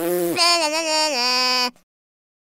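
A high-pitched, quavering bleat-like voice: a short higher note, then a longer lower one held with a wobble, cutting off suddenly near the end.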